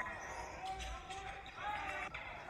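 Game sounds in a gym: a basketball bouncing on the hardwood amid the voices of players and spectators.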